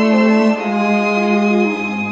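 A sampled small orchestral string ensemble (Sonokinetic Indie) playing held chords from a keyboard, with violin and cello voices. The chord shifts about half a second in and again near the end.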